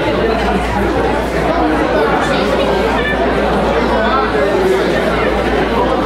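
Indistinct chatter of many voices at once from spectators and corner people in a large hall, at a steady level with no single voice standing out, over a steady low hum.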